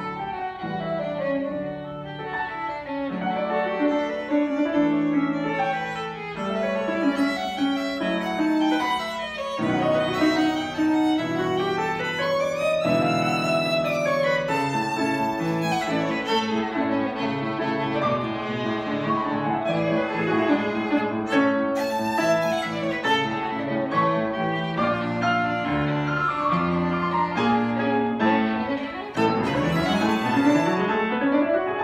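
Violin playing a melody over piano accompaniment, with a long note that slides up and back down about twelve to fifteen seconds in.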